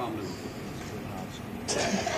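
Faint murmur of voices over the steady low hum of an old recording. Louder voices come in near the end.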